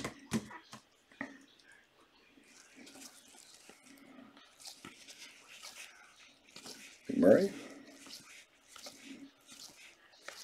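Faint handling of trading cards by gloved hands: scattered light clicks and rustles of cards and plastic card holders on a table. About seven seconds in, a short vocal sound from a man cuts through.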